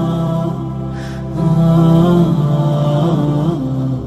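Devotional chant music: a sustained melody line gliding smoothly between notes over a steady low drone, with a short lull about a second in before the line swells again.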